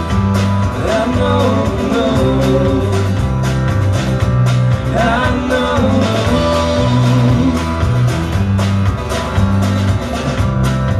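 Live band playing a song: strummed acoustic guitar, electric bass and drum kit keeping a steady beat, with a wavering melody line rising above them twice.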